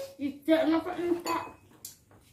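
Spoons clinking and scraping on plates during a meal, with one short sharp clink near the end.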